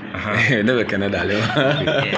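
Two men laughing and chuckling together, mixed with talk.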